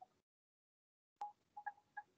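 Near silence, then a few faint, short pitched blips or ticks in the second half.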